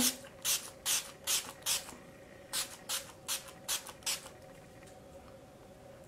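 Pump-action mist bottle of makeup setting spray sprayed at the face: ten quick short hisses in two runs of five, the second run starting about two and a half seconds in.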